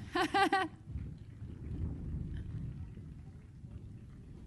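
A brief voice at the start, then a low, irregular rumbling noise with no tune or words in it.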